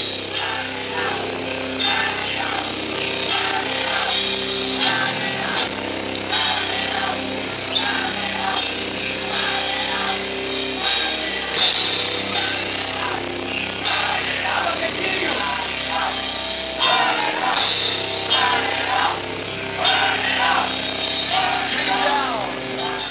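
Heavy metal band playing live: electric guitar and bass guitar over a drum kit, with crash cymbals struck again and again.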